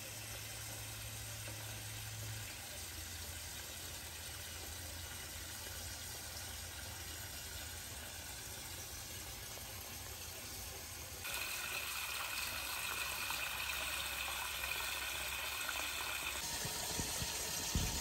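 Water running steadily from a hose topping off an aquarium, over a low steady hum. About eleven seconds in the water gets louder and brighter.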